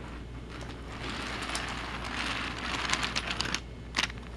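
Thomas & Friends Take-n-Play Hank toy engine and its trucks pushed by hand along plastic track, the wheels rolling with a steady rattle and a few sharp clicks. The rattle grows a little louder from about a second in.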